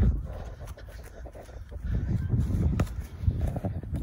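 Wind rumbling on the phone's microphone in an open field, with a few faint knocks.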